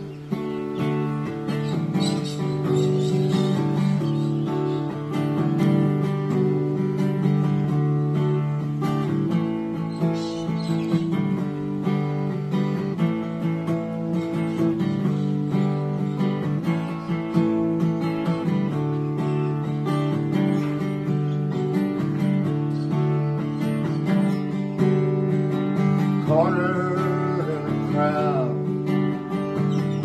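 Acoustic guitar playing the instrumental introduction of a song, chords ringing steadily throughout.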